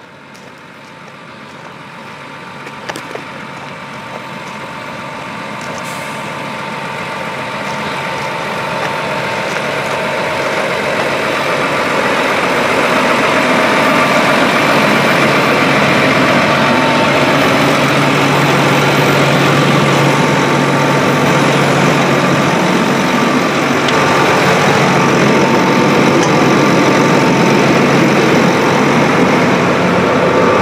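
A 346 hp John Deere R4045 self-propelled sprayer running, growing steadily louder over the first dozen seconds and then holding steady close by. It is a constant low drone with a steady higher whine over it.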